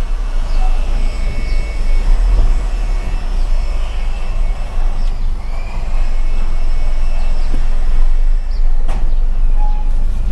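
Car driving slowly, heard from inside the cabin: a steady low engine and road rumble, with a single sharp click near the end.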